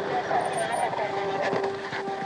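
A motor vehicle's engine running at a steady pitch, with faint voices in the first second.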